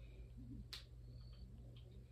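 A single sharp click about three-quarters of a second in, over a faint, steady low hum; otherwise near silence.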